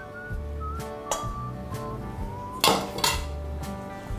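A spatula scrapes and knocks against a stainless-steel mixing bowl as an egg is stirred into creamed butter and sugar, with one louder clatter about two and a half seconds in. Background music with a whistled tune plays underneath.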